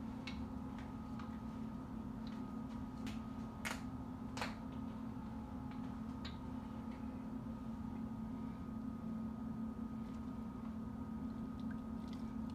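Pot of ground beef cooking in a little water and bouillon, giving scattered soft pops and ticks, most of them in the first half. Under them runs a steady low hum.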